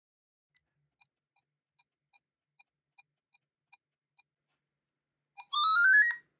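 Gakken GMC-4 4-bit microcomputer's small speaker giving short, faint beeps, two or three a second, during its mole-whacking game. Near the end it plays a louder run of stepped tones rising in pitch: the end-of-game tune after all ten moles were hit.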